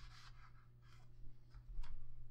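Faint paper rustling and a few light taps as a cardstock photo mat is handled and set back into an album page pocket.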